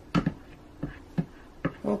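Several short taps and clicks, about five in two seconds, as the silicone spatula and plastic pouring pitchers of soap batter are handled.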